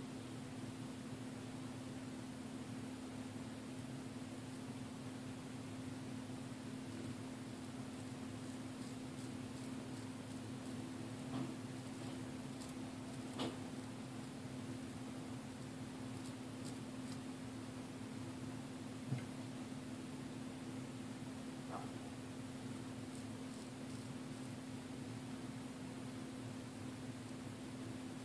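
Kamisori straight razor scraping through about a week of neck stubble: a few faint scratches and ticks, mostly in the middle, over a steady low hum of room noise.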